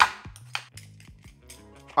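Background music with steady low notes. Right at the start, one sharp scrape, then a few faint clicks, from peeling a potato with a knife over a cutting board.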